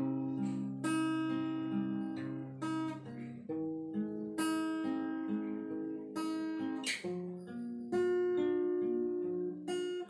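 Acoustic guitar with a capo, fingerpicked one string at a time in a repeating arpeggio pattern (strings 5-4-2-3-4-5-2-3), the notes ringing into each other, with a chord change every second or two.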